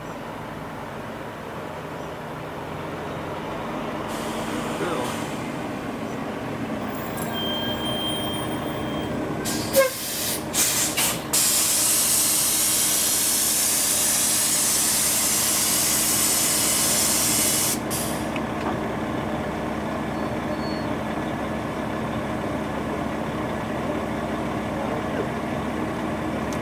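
MCI J4500 diesel motor coach drawing up and stopping, its engine getting louder as it nears. About ten seconds in come a few sharp air bursts, then a loud steady air-brake hiss for about six seconds that cuts off suddenly, leaving the engine idling.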